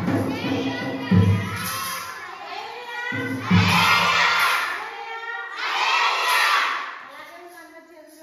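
A group of children shouting together in two loud bursts, about three and a half and six seconds in, with a backing track with a beat playing under the first half.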